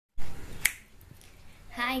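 A thump of handling noise as the recording begins, then a single sharp click, like a finger snap, about two-thirds of a second in. A woman says 'Hi' at the very end.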